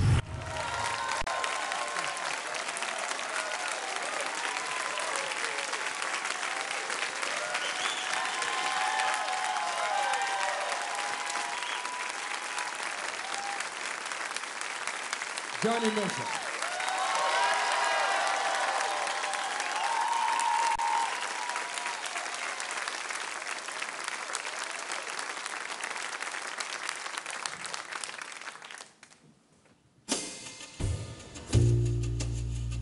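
Concert audience applauding and cheering, with whoops and shouts rising and falling through the clapping; it fades out near the end.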